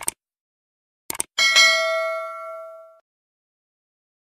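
Click sound effects, a quick pair at the start and another pair about a second in, then a bright notification-bell ding that rings out and fades over about a second and a half. This is the subscribe-and-bell button animation's sound effect.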